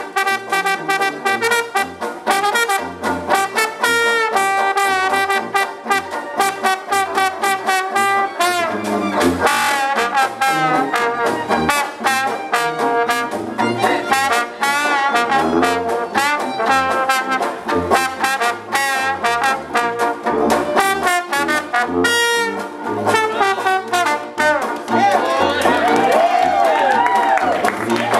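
Slide trombone playing a jazz solo over a small jug band's accompaniment, with a pulsing bass line and a steady rhythm of short clicks underneath. Near the end the trombone stops.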